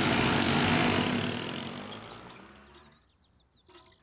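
A group of small motor scooters driving off together, their engines loudest at first and then fading away over about three seconds as they recede.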